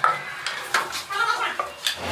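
Three sharp clacks of hard objects knocking together, spread across the two seconds, with voices faintly in the background.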